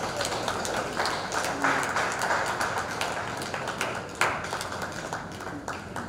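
Audience applause, a steady patter of many hands clapping, with a few sharper single claps standing out.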